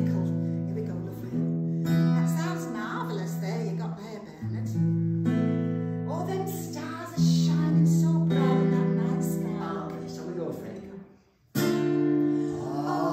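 Acoustic guitar strumming slow chords, each left to ring for a few seconds before the next, as the opening of a song. Near the end the sound dies away briefly before a new chord is struck.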